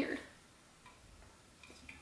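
Faint drinking sounds from a stainless-steel tumbler: a few quiet, short sips and swallows, just after a spoken word ends at the very start.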